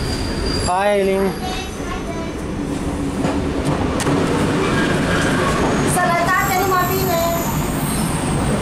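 A diesel railcar heard from inside the carriage near its open doors, with a steady low running noise throughout.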